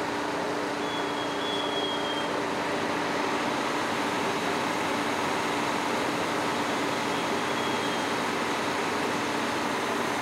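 Fire engines' diesel engines running steadily to drive their fire pumps, which feed the hose lines connected to them: a constant, unchanging engine and pump noise with a few steady tones in it.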